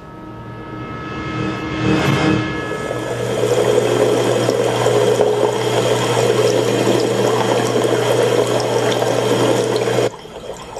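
A loud rush of running water that swells over the first few seconds, then holds steady over a low hum, and cuts off abruptly at the end.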